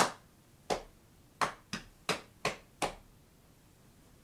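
Unaccompanied hand percussion closing out the song: seven sharp hand strikes in an uneven rhythm, stopping about three seconds in.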